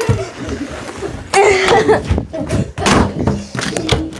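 Scuffling: several sharp thumps and knocks, with a short burst of muffled voice between them.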